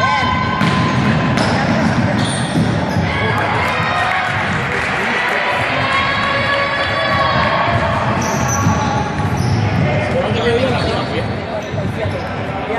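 A basketball bouncing repeatedly on the wooden floor of a large sports hall during a game, with players' voices calling out over it.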